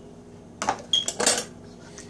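A utensil scraping and knocking against a stainless steel mixing bowl while stirring a thick noodle mixture. A few quick strokes come about half a second in, one of them with a brief metallic ring.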